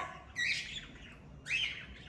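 Blue-fronted Amazon parrot giving two short calls, the first about half a second in and the second about a second and a half in.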